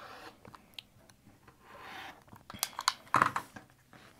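Rotary cutter rolling through quilting cotton against a cutting mat, a soft crunchy rasp, followed by a cluster of sharp clicks and crackles about three seconds in as the acrylic ruler and trimmed fabric are handled.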